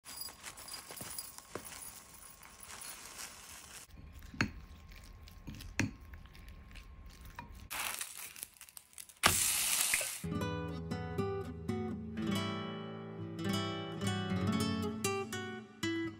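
Faint kitchen handling sounds: scattered light clicks and taps of utensils and dishes, with two brief bursts of hiss a little before halfway. Then background music on acoustic guitar comes in and carries on.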